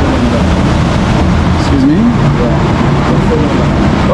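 Loud, steady low rumbling ambience in a rail station concourse, with faint voices in the background.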